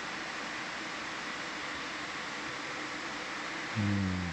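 Steady hiss with a faint hum, the background noise of the dive's audio feed. Near the end comes a short low-pitched hum, like a voice about to speak.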